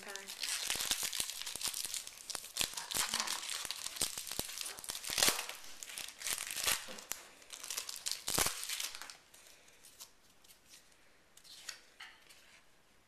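A trading card pack's wrapper being torn open and crinkled by hand. The crackling runs for most of the first nine seconds, then dies down to faint handling.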